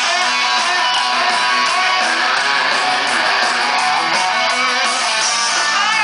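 Live rock band playing loud over a concert PA, with electric guitar to the fore and no singing, heard from within the audience.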